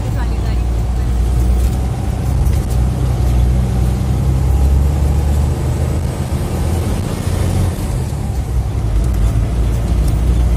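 Bus engine running with road noise, heard from inside the passenger cabin as a steady low drone.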